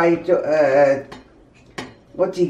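Cleaver blade knocking on a plastic cutting board as shrimp are cut: a few sharp clicks, the clearest near the end. A voice talks over the first second.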